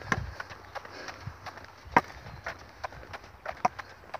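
Footsteps and a wooden walking stick tapping on a paved lane while walking: irregular sharp taps, the loudest about halfway.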